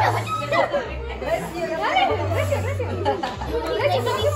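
Many overlapping voices of children and adults chattering, with a low bass line of background music underneath.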